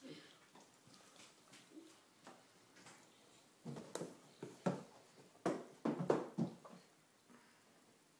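A plastic spoon clicking and scraping against a plastic bowl: a quick cluster of light knocks and clatters near the middle, after a few quiet seconds.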